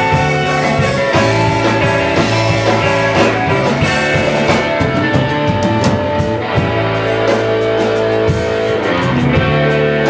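Live rock band playing an instrumental passage on electric guitars through amplifiers, steady sustained chords and notes with a strummed rhythm and no singing.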